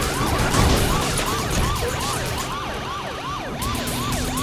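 Police cruiser siren on a fast yelp, about three rising-and-falling whoops a second, over engine and road noise during a pursuit.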